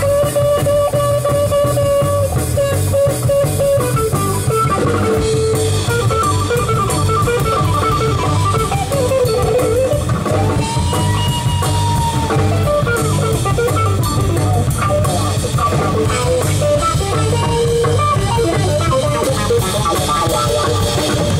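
Live jazz quartet playing: alto saxophone and hollow-body electric guitar over double bass and drum kit with a steady beat. A long held note opens the passage and another comes around the middle.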